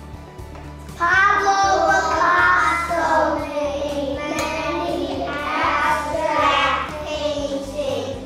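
Several young children singing a memorisation chant together in a classroom 'sound off', starting about a second in, over a steady background music bed.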